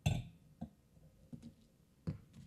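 A few light taps at uneven intervals, the first, right at the start, the loudest and the rest fainter.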